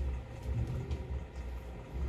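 Steady low background hum, with faint rustling and light handling sounds of used fleece clothing being moved on the pile.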